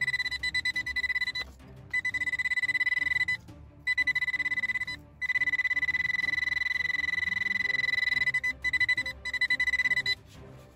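Metal detector's target signal: a high, rapidly pulsing beep sounding in stretches of one to three seconds with short breaks, a strong signal from metal close by.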